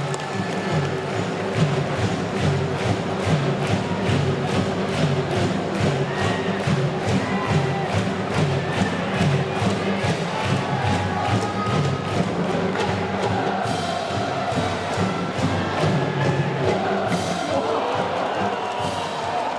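A stand cheering section's brass band plays with a steady, driving drumbeat while the crowd chants and cheers along at a baseball game.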